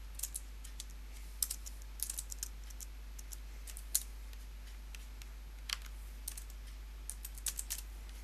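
Computer keyboard being typed on: sparse, irregular key clicks in small clusters as numbers are entered, over a steady low hum.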